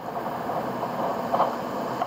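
Steady background hum and hiss of the recording, with a faint short sound about one and a half seconds in.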